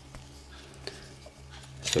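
Quiet fiddling with a small plastic alarm door contact and its thin wires, with one light click a little under a second in, over a steady low hum.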